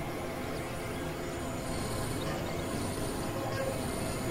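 Experimental electronic noise music: a dense, rumbling synthesizer drone at an even level, with a few faint steady tones held through it.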